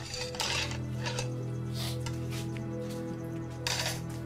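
Dishes and cutlery clinking and clattering in short bursts, about five times, over steady background music.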